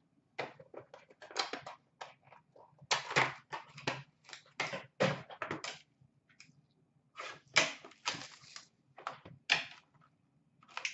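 Handling and unsealing a sealed trading-card box by hand: irregular rustles, scrapes and taps of cardboard and plastic wrap, in clusters with a short pause about six seconds in.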